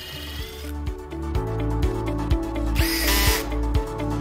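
Cordless drill running in bursts, drilling a pilot hole into plywood through a spring-loaded self-centering hinge bit. The motor rises in pitch in the loudest burst about three seconds in. Background music plays underneath.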